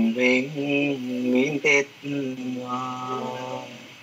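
A single voice chanting a Buddhist verse in long, held notes, phrase by phrase, with a short break about two seconds in and fading out at the end.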